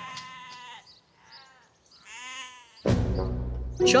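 A sheep bleating twice: a call about a second long at the start, and a second bleat about two seconds in that rises and falls. Background music comes in near the end.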